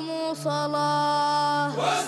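Men singing a chant together in long, drawn-out held notes, with a steady low hum beneath, and a brief burst of noise near the end.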